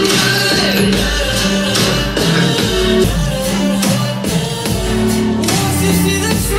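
A pop song with singing and a steady bass beat, played loud through a portable Bluetooth speaker and picked up in the room.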